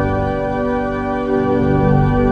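Cathedral pipe organ playing sustained full chords over deep bass notes, the harmony shifting to a new chord about one and a half seconds in.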